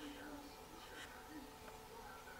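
Very faint background: a steady low hum with a faint murmur of voices far off.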